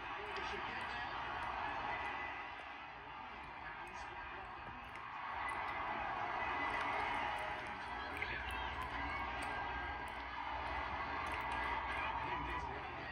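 Stadium crowd noise from a televised football match, heard through a TV's speakers, swelling about five seconds in.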